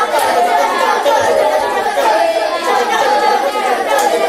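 Many children's voices chanting together at once, overlapping, the group vocal of a Balinese kecak dance.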